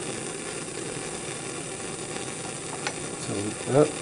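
Bunsen burner set to its hot blue flame, burning with a steady rushing noise, with a faint click about three seconds in.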